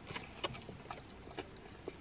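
A person chewing food quietly with the mouth closed, soft clicks about twice a second.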